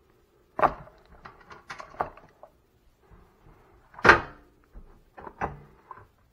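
Knocks and clicks of a dress panel being handled and fitted back over a fire alarm control panel: a sharp knock about half a second in, a run of small clicks, the loudest knock about four seconds in with a brief ring, then two lighter knocks near the end.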